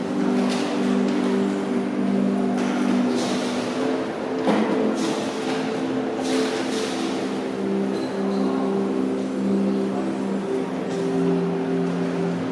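Slow ambient drone music: several low held tones that shift every second or two, with swells of hiss washing over them.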